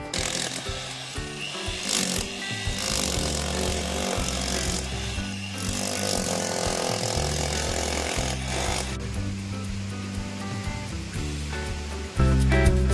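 Power-tool noise, a drill boring into a masonry wall, running in several stretches over background music. The tool noise stops about nine seconds in, leaving only the music.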